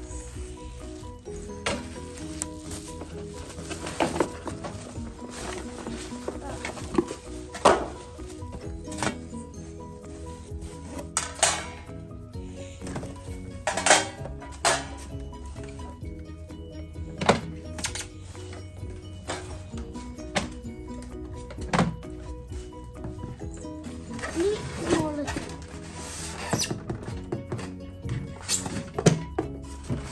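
Background music with a steady beat, overlaid by scattered knocks and clacks of hard plastic air fryer parts being handled and fitted, and the rustle of bubble wrap being pulled off.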